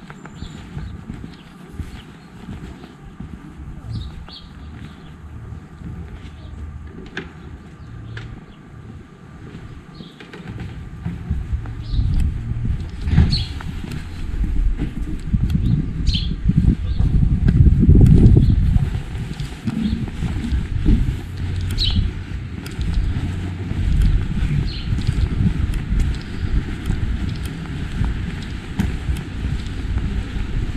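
Wind buffeting the microphone as a low rumble, light at first, then swelling about a third of the way in and strongest midway. A few short high chirps are heard here and there.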